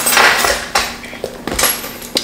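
A plastic fork scraping and tapping in a plastic bowl of food, in several short scrapes and clinks, the strongest at the start and about one and a half seconds in.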